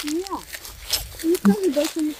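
Voices of people talking, softer than close speech, with a few light clicks and taps among them.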